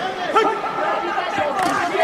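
Speech: voices talking, with several overlapping in a steady chatter.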